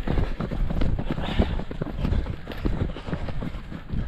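Running footsteps of several runners on a dirt trail, a fast, irregular run of footfalls over a low rumble.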